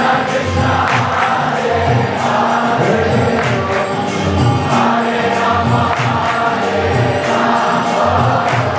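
Kirtan: a large group singing a devotional chant together over a steady beat of drum and small hand cymbals, about two strokes a second.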